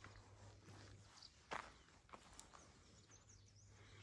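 Near silence with faint footsteps on a path, the loudest step about a second and a half in, and a few faint bird chirps near the end over a low steady hum.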